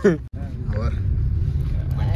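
A car's steady low running rumble heard from inside the cabin, beginning after a brief cut about a third of a second in, with a faint voice over it.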